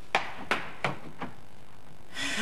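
Quick footsteps on a wooden floor: four steps about a third of a second apart.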